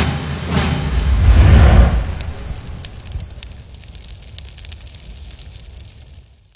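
An added sound effect: a deep rumble that swells to its loudest about a second and a half in, then fades out slowly with scattered crackles.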